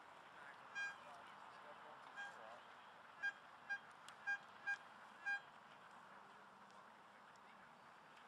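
Metal detector sounding a target: seven short, high beeps, the last five coming in a steady back-and-forth rhythm about half a second apart, as the coil is swept over a buried object.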